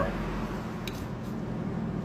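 Steady low mechanical hum of room machinery, with one short click about a second in.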